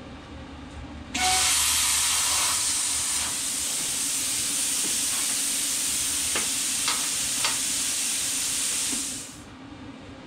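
Plasma cutter torch firing: a loud, steady hiss of air that starts suddenly about a second in and cuts off shortly before the end, with a few faint crackles. The ground clamp is not yet hooked up, so the torch is not cutting.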